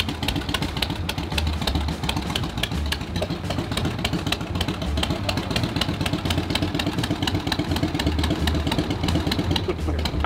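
1959 Harley-Davidson Panshovel V-twin running at idle with a rapid, slightly uneven firing beat, just started from cold.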